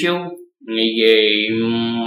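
A man's voice ends a short word, then holds one long vocal sound at a flat, steady pitch for about a second and a half, a drawn-out hesitation sound between phrases.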